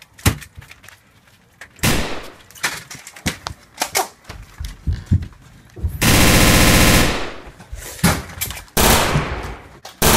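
Rapid gunfire sounds: one dense, very loud burst of about a second about six seconds in, and a shorter burst near the end, after a run of scattered knocks and bumps.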